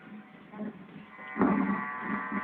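Mostly quiet, then about one and a half seconds in a man's voice holds one long, steady drawn-out note.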